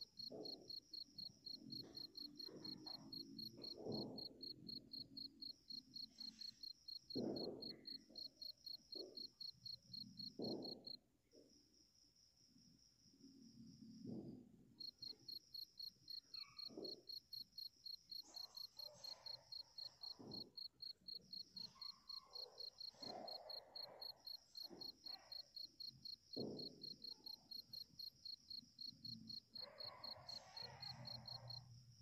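Crickets chirping in a fast, even pulse that pauses for a few seconds about eleven seconds in, then carries on. Faint soft knocks and rustles sound underneath.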